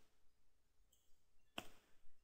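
Near silence: room tone, with one sharp click about one and a half seconds in.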